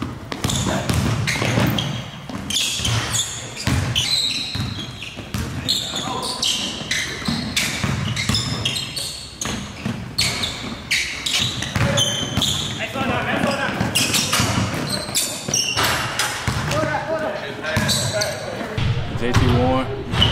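Basketball being dribbled on a hardwood gym floor, a run of irregular bounces, with people talking over it.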